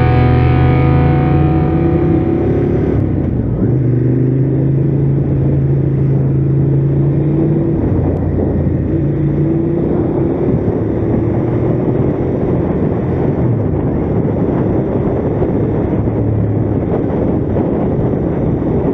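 Background music for about the first three seconds, then a motorcycle engine running at road speed with wind noise, its pitch rising and falling gently as the rider accelerates and eases off.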